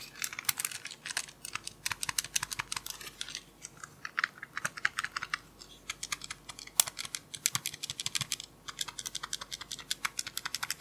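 Rapid plastic clicking from fingers pressing and tapping a scientific calculator close to the microphone, in quick runs broken by a few short pauses.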